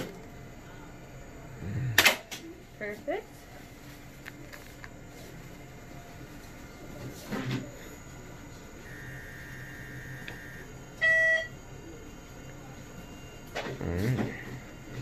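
Portable X-ray unit sounding its exposure signal: a faint steady tone for about a second and a half, then a short loud beep as the image is taken. A sharp knock comes about two seconds in.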